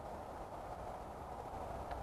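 Quiet, steady outdoor background noise with no distinct event: a low, even hum and hiss.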